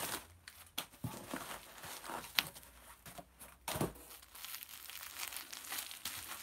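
Crumpled newspaper packing rustling and crinkling as it is pulled out of a cardboard box, an irregular run of crackles with a few sharper clicks.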